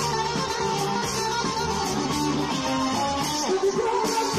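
Live band playing an instrumental passage of a folk-pop song, with plucked guitar prominent.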